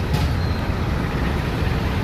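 Steady low rumble of roadside traffic.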